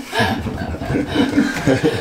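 A person chuckling and laughing.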